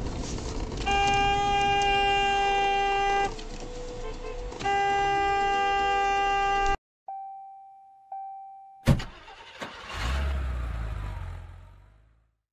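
Car horn sounding in two long, steady blasts of about two seconds each, over engine and road noise heard from inside a moving car. After a sudden cut, two short fading tones, a sharp hit and a rumbling whoosh follow: an intro sting.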